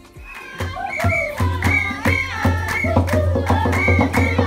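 A group of San women singing together over sharp, rhythmic hand-clapping, starting about half a second in.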